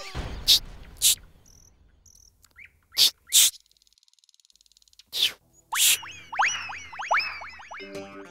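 Comedy background score of sound effects: a few sharp percussive hits, then a near-silent gap with a faint high buzz, then a quick run of repeated swooping pitch glides near the end.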